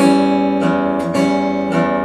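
Steel-string acoustic guitar finger-picked on an E minor 6 chord, bass note alternating with the upper strings, a new pluck about every half second while the chord rings.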